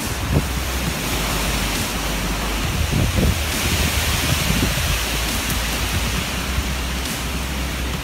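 Strong storm wind blowing through forest trees, with wind buffeting the microphone. The wind swells in a gust around the middle.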